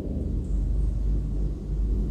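A steady low hum or rumble of background noise, with no other sound over it.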